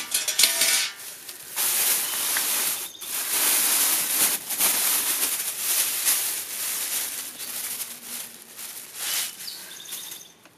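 A few clicks, then a long crinkling rustle of a plastic bag as food scraps are tipped out of it and tumble into the bucket of a Lomi countertop composter.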